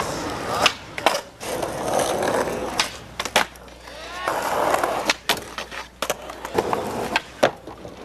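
Skateboard wheels rolling on concrete, broken by a series of sharp wooden clacks from the board popping and landing.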